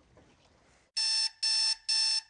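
Electronic alarm clock going off with short, evenly spaced beeps, about two a second, starting about a second in.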